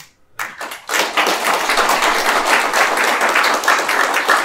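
Applause from an audience, many people clapping. It starts abruptly about half a second in, swells within a second, then holds steady and loud.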